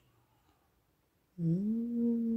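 Near silence, then about a second and a half in a person hums one long, level 'mmm' that rises briefly in pitch at its start.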